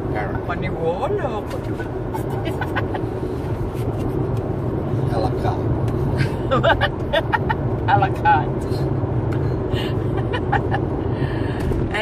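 Steady road and engine noise inside a moving car's cabin. A voice breaks in about a second in, and louder between about six and eight and a half seconds in, with a few light clicks.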